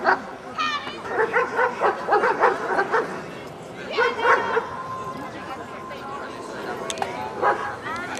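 Dogs yipping and barking mixed with excited voices calling out, as a German Shepherd puppy is gaited around a show ring. Quick short calls come through the first few seconds, with a loud call at about four seconds. A steady held tone follows for a couple of seconds, then more calls near the end.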